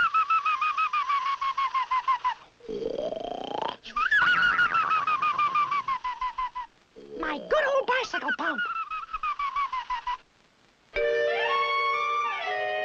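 Cartoon snoring voiced by a performer: three long, falling whistles with a fast flutter, with a rising, rasping intake of breath after the first and a brief mutter before the third. A short brass-and-woodwind music cue comes in about a second before the end.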